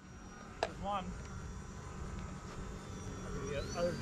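Electric motors and propellers of small RC foam airplanes whining faintly overhead in a thin, steady whine, one rising in pitch near the end.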